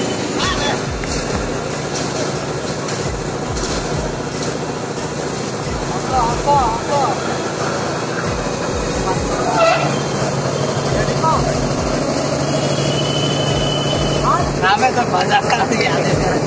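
A group of people talking and calling out at once, a continuous babble of voices, with a steady hum joining in during the second half.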